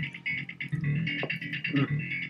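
Guitar being played, heard as music.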